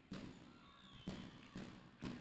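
Faint court sound of a basketball game: a few soft thuds of the ball being dribbled, over quiet arena background.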